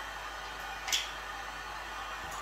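Steady background hiss with one short, sharp click about a second in, as a small brush is worked against an open tin of black wax.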